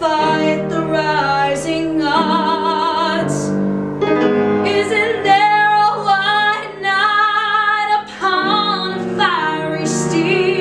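A woman singing a musical theatre song, holding notes with vibrato, over instrumental accompaniment. There are short breaths between phrases about four and eight seconds in.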